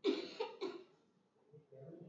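A person coughing, a quick burst of about three coughs, then fading to a faint low voice.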